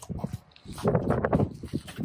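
Clicks and rattles of hands working the latch of an RV's exterior propane compartment door, a run of short knocks building up about half a second in.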